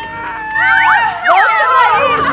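Excited squeals and shrieks from more than one person, overlapping, their pitches sliding up and down.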